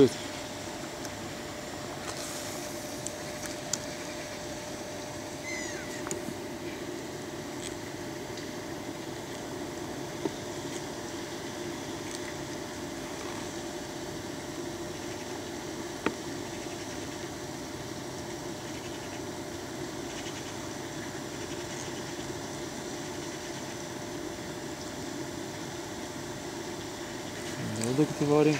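Steady background hum with a faint constant tone, broken by a few single faint clicks.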